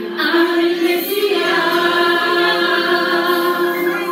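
A group of women singing together, holding long sustained notes.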